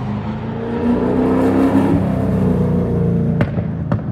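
Race car engine running under load at a nearly steady pitch, with a sharp click about three and a half seconds in.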